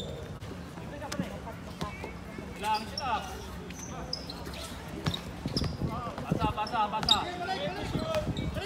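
A basketball being dribbled and bouncing on a hard court during play, with players shouting to each other around three seconds in and again in the last few seconds.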